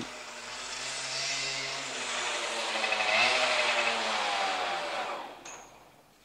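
A vehicle engine sound effect with a steady rush of noise and slowly rising pitch, swelling and then fading away about five seconds in, like a vehicle driving off.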